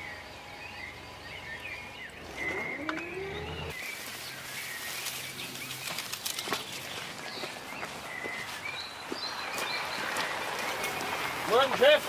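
Outdoor ambience with faint bird chirps and a brief rising tone a few seconds in, then the rustle and scattered clicks of workers dragging a roll of wire fencing through long grass.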